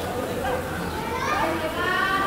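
Several footballers' voices shouting and calling to one another, overlapping and indistinct.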